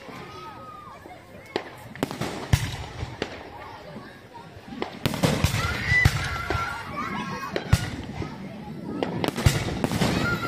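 Aerial fireworks bursting overhead: scattered sharp bangs in the first half, then denser bangs and crackling from about five seconds in.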